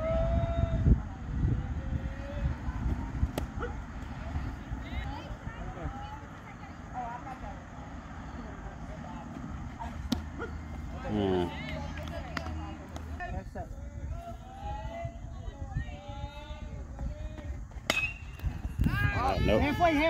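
Indistinct distant voices and calls over a low steady rumble, with a single sharp click near the end.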